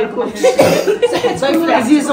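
Women talking, with a single cough about half a second in.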